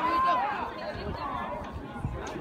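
Spectators' voices calling out and chattering, high-pitched and without clear words, dying down over the two seconds.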